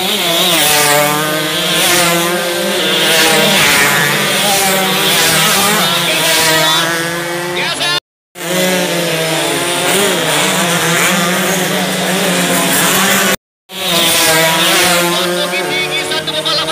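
Several two-stroke underbone race motorcycles running hard past the spectators, their high buzzing engines rising and falling in pitch as they rev, overlapping each other. The sound cuts out briefly twice, at edits.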